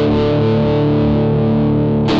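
Electric guitar played through a Heather Brown Electronicals Sensation Fuzzdrive fuzz/overdrive pedal: one distorted chord held and ringing out, its top end slowly fading.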